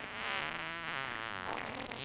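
A long, wavering fart noise that is blamed on the leather chair.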